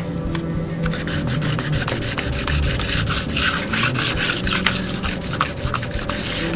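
Abrasive pad rubbed rapidly back and forth over the metal rails of a hand-built model railroad turnout, a quick run of scratchy strokes starting about a second in.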